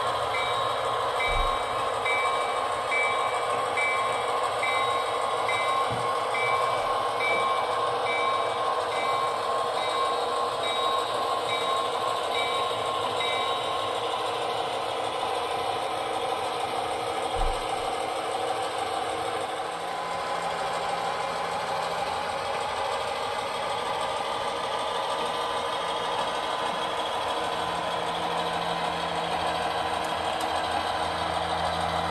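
Sound-equipped HO-scale model diesel locomotive running with its train: a steady diesel engine sound from the locomotive's speaker. A repeating ringing tone, about one and a half strikes a second, stops a little before halfway, and a deeper engine hum comes in about two-thirds of the way through.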